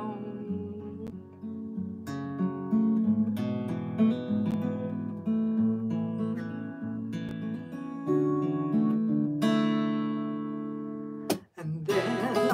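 Solo acoustic guitar strummed and picked through an instrumental passage between sung verses. Near the end a chord rings out and fades, then a sharp stroke cuts it short before playing resumes.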